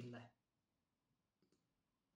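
Near silence after a spoken word trails off, with two faint clicks close together about a second and a half in: computer mouse clicks as the video's playback speed is set back to normal.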